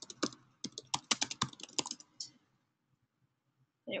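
Typing on a computer keyboard: a quick run of keystrokes that stops a little past two seconds in.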